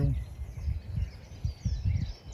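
Irregular low rumbles of wind buffeting the microphone, with faint birds chirping in the background.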